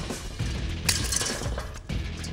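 Steel wire seat springs clinking and rattling as they are handled and fitted into a car seat's steel frame, with a sharp metallic click a little under a second in. Background music plays underneath.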